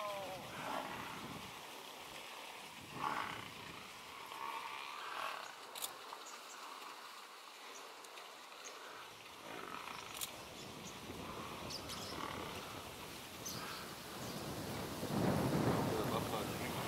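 Wild animal calls from lions at a kill and a Cape buffalo herd at a muddy waterhole: short, scattered calls, becoming louder and deeper near the end.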